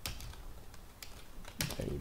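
Computer keyboard being typed on: a handful of separate keystrokes, the first the sharpest, with a few words spoken near the end.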